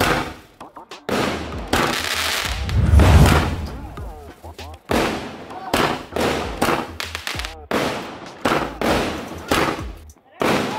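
Aerial fireworks bursting overhead: a rapid series of sharp reports, about one or two a second, each with an echoing tail, the loudest about three seconds in.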